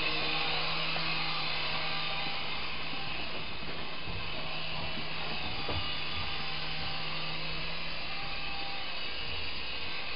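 Syma S107G micro RC helicopter's small electric motors and coaxial rotors whirring steadily in flight.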